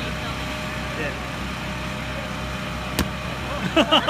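Steady hum of an inflatable arena's air blower running continuously. A single sharp knock comes about three seconds in, and laughter starts near the end.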